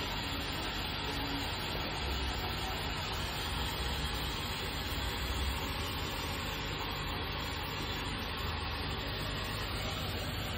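Steady low mechanical hum with an even hiss over it, unchanging throughout.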